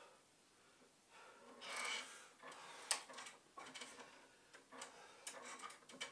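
Faint sounds of a man hanging from a pull-up bar: a breath about a second and a half in, then a run of irregular light clicks and creaks from the bar and its mounting as it takes his weight.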